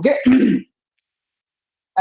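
A man clears his throat once, briefly, right after a spoken "okay".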